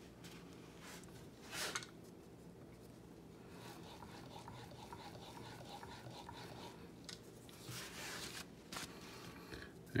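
Steel chisel in a roller honing guide being worked back and forth on a wet sharpening stone: faint, soft scraping strokes from about three and a half seconds in to near the end, evening out a secondary bevel that is heavier on one side. A soft knock comes about two seconds in as the guide is set on the stone.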